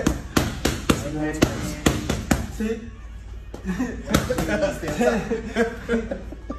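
Boxing gloves hitting focus mitts in fast combinations: about ten sharp smacks over the first two and a half seconds, then a few single ones, with men's voices talking in the second half.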